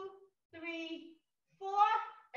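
A woman's voice singing or chanting in short phrases, each held mostly on one note, with brief silences between; the last phrase, near the end, is the loudest.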